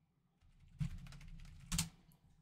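Computer keyboard being typed on: a short run of keystrokes starting about half a second in, with one louder clack near the end.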